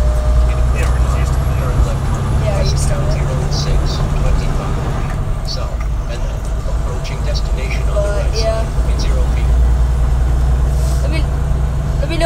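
Steady low rumble of engine and road noise inside a vehicle's cab while driving at highway speed.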